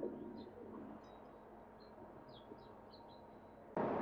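Faint room tone with scattered short, high bird chirps, about a dozen spread through the quiet. A man's voice comes back in just at the end.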